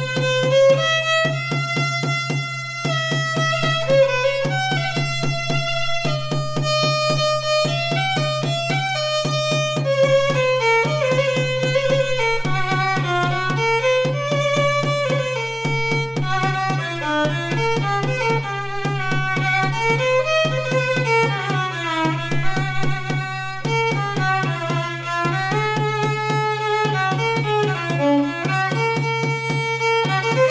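Violin playing a slow Indian classical-style melody with slides between notes and vibrato, over a steady rhythmic accompaniment with a constant low drone.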